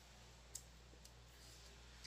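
Near silence over a low steady hum, broken by one sharp click about half a second in and a fainter click about a second in.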